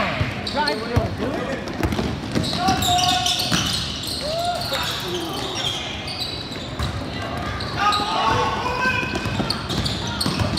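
Basketball game in a gym: the ball bouncing repeatedly on the court floor, with indistinct shouting from players and spectators.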